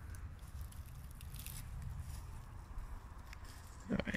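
Faint handling and rustling noise over a steady low rumble, with a few soft crackles about a second and a half in, as a piece of mushroom is handled and torn.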